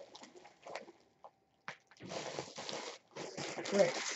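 Plastic packaging being handled, with rustling and crinkling in two stretches: one about two seconds in and another near the end.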